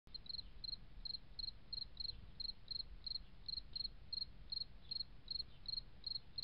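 A cricket chirping faintly and steadily, short high chirps at about three a second, over a low background hum.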